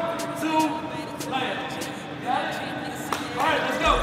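Speech in a large gym hall, with a few sharp knocks of a basketball bouncing on the floor.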